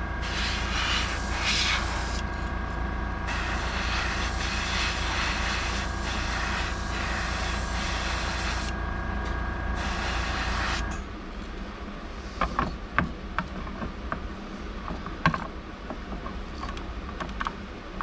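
Airbrush hissing as it sprays paint over a steady motor hum, likely the airbrush compressor. The hiss breaks off twice briefly. About eleven seconds in, the motor stops, leaving light clicks and taps of the airbrush and lure holder being handled.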